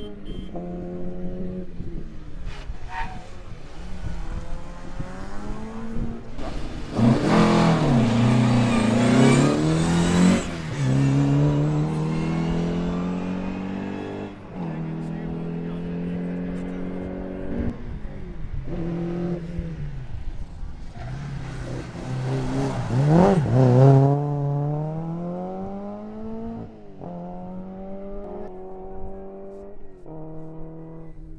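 Rally cars at speed on a sprint course, their engine notes climbing and dropping with each gear change. The sound is loudest when a car passes close, about 7 to 10 seconds in and again about 22 to 24 seconds in.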